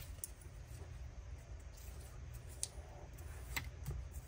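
Vellum paper handled by hand on a cutting mat as its gusset sides are folded in and pressed flat: a few faint, crisp ticks and rustles over a low steady hum.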